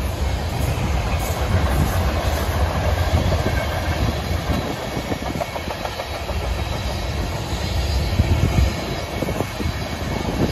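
Freight train of covered hopper cars rolling past close by: a steady rumble of wheels on the rails with a running clickety-clack.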